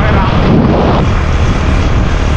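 Steady wind rush on the microphone over a motorcycle engine running while riding at speed.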